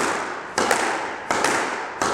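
Squash ball being volleyed in a figure-of-eight against the court walls: sharp smacks of racket on ball and ball on wall, about three in two seconds, each ringing out in the court's echo.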